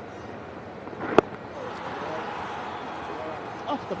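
A cricket bat strikes the ball once about a second in, a single sharp crack over a steady background noise of the ground in a TV broadcast.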